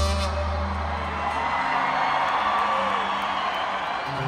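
Music with a heavy bass fades out about a second and a half in, leaving a concert crowd cheering and whooping.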